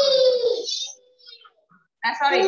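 A child's voice holding one long, high-pitched vowel for about a second, then trailing off.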